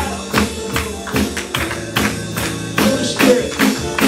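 Live gospel praise music: keyboard chords with a steady clapped beat, about two and a half claps a second.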